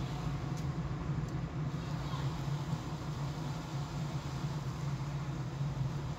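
Car driving at low speed, heard from inside the cabin: a steady low engine and road hum.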